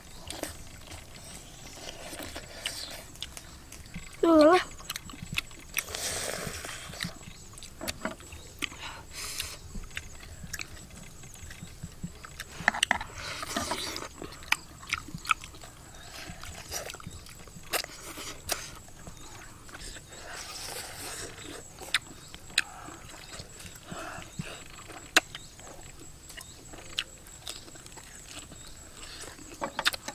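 People eating with their hands: chewing and lip-smacking, heard as many short clicks, with one brief voiced hum about four seconds in.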